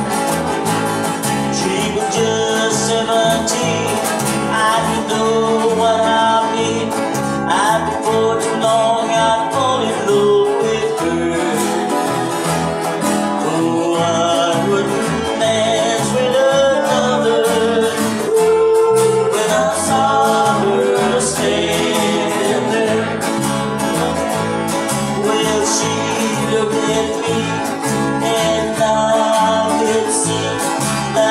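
A small live band playing an upbeat rock-and-roll song on electric guitar, archtop guitar and electric bass, with a man singing.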